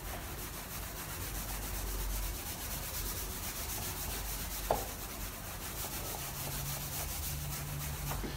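Whiteboard eraser rubbing back and forth across a whiteboard in quick, repeated strokes, wiping off marker writing. There is one light tap about halfway through.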